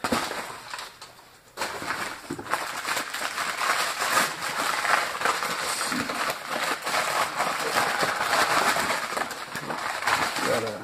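Crumpled newspaper wrapping rustling and crackling as a piece is unwrapped by hand, starting after a quieter first second and a half.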